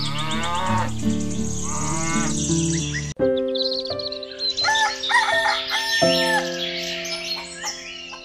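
Cow mooing sound effects over background music. About three seconds in, the track cuts off suddenly and switches to chicken calls over a different music track.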